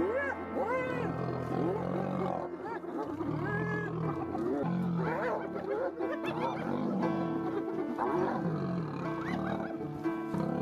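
Lions growling while feeding at a carcass, in many short rising-and-falling calls, over background music with held notes.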